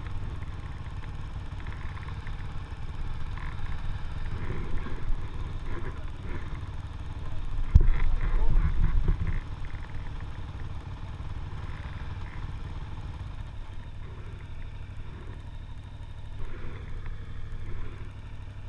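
KTM 950 Super Enduro's V-twin engine idling steadily. A sharp knock comes about eight seconds in, followed by a brief rise in engine sound.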